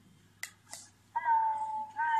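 A click about half a second in, then the heart-shaped recordable music box's small speaker plays back the voice just recorded on it: a drawn-out, high, thin-sounding voice note starting just over a second in.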